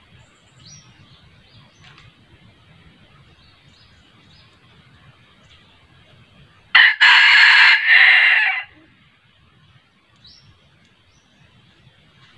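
Red junglefowl rooster crowing once, a loud crow of about two seconds in three linked parts, a little past the middle. A few faint high chirps sound around it.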